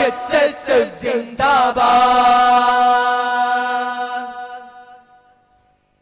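Voices singing the close of a Malayalam revolutionary song (viplava ganam): a few short sung phrases, then one long held note that fades away about five seconds in.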